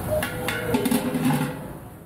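Metal ladle clinking and scraping against a large aluminium cooking pot of rice, with a few sharp knocks, under a faint voice. Everything fades out near the end.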